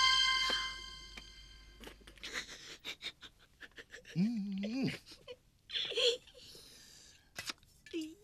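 Background music with long held tones fades out in the first second or so. After that a man groans once, his voice rising and falling, about four seconds in, with a few soft knocks and rustles as he moves on the floor.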